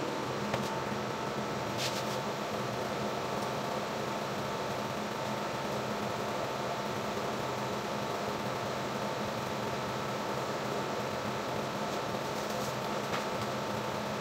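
Steady hum of a ventilation fan in a commercial kitchen, with a couple of faint clicks about two seconds in and again near the end.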